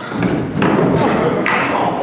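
A thud amid loud, continuous voices.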